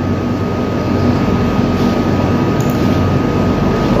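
Steady background hum and hiss with a thin, constant high whistle tone, unchanging throughout, like the running noise of an air conditioner or similar room machine.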